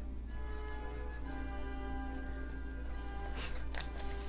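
Quiet background classical music with long held notes, with a few faint clicks near the end.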